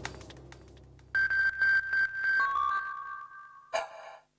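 A music bed fades out, then a TV news ident plays synthesized electronic beeps: a run of short high pulsed tones about a second in, stepping down to a lower held tone that fades away, with a brief burst of sound near the end.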